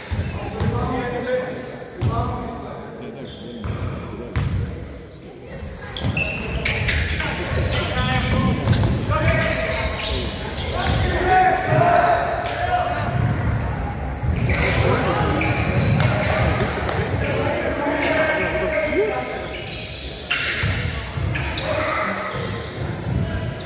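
A basketball bouncing on a wooden court floor in a large sports hall during a game, mixed with the voices of players and spectators calling out.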